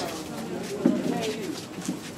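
Indistinct voices of a crowd talking over one another, with one short louder voice about a second in.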